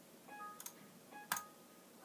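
Two faint clicks about 0.7 s apart, likely from a computer mouse, each just after a brief faint tone.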